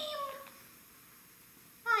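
A woman's drawn-out character voice, a high sound sliding down in pitch, trails off within the first half-second. Then comes a pause of near silence, and a new word starts just before the end.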